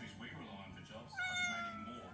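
Domestic cat giving one drawn-out meow, starting about a second in, its pitch sliding slightly down as it is held.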